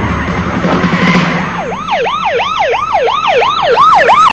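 Car engine and tyre noise, then about a second and a half in a siren starts in a fast yelp. It sweeps up and down about three times a second and grows louder toward the end.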